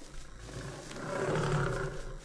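Lion roar sound effect: the tail of one low, rough roar dies away, then a second roar builds about a second in and breaks off near the end.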